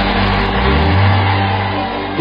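Sustained church keyboard chords with a deep bass note that rises about a second in, under a loud, even wash of congregation voices answering the prayer.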